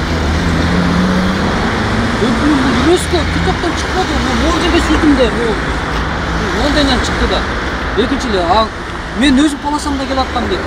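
Road traffic noise with a vehicle engine running steadily, under people talking in the background.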